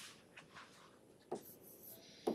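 Near silence with faint stylus scratches on a tablet screen and one brief tap a little over a second in, as handwriting begins.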